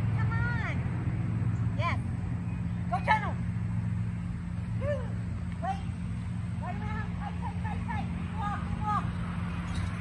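A woman's voice giving short, high-pitched calls again and again, like cues to a dog running a course, over a steady low hum.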